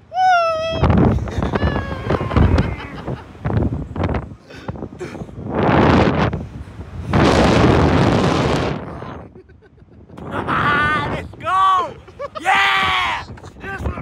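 A rider's short, high scream as the Slingshot reverse-bungee capsule launches, then loud wind rushing over the microphone in long gusts. Near the end come more screams and yells as the capsule swings and drops.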